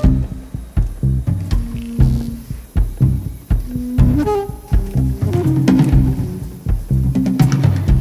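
Live band playing an instrumental passage: a pulsing bass line and drums, with a few held melodic notes over them.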